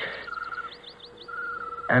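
Birds chirping: a run of quick high chirps, some dropping in pitch, with a short rapid trilled call heard twice.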